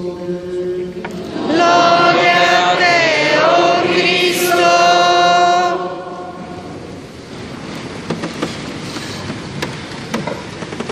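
Congregation in a large church singing a short chanted response, from about a second and a half in until about six seconds in, with a brief dip in pitch midway: the sung acclamation after the Gospel reading at Mass. Then quieter rustling with small knocks.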